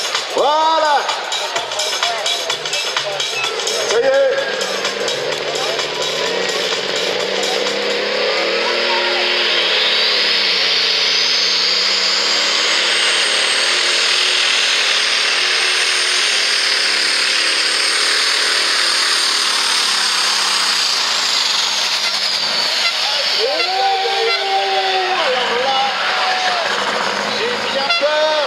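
Superstock pulling tractor, a red International 6588 'Hobo' with a turbocharged diesel engine, making a full pull. The engine revs up, and a high turbo whistle climbs, holds steady for about ten seconds, then falls away near the end as the run finishes.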